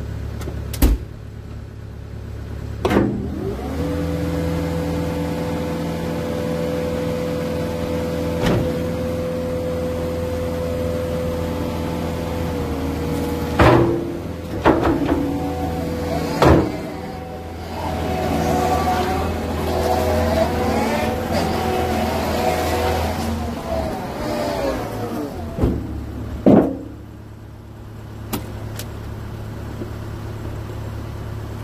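Caterpillar 299D2 compact track loader's 98 hp diesel engine running, rising about three seconds in as the loader is worked. Sharp clunks come at intervals, with wavering whines in the middle as the arms and bucket move. The engine drops back near the end.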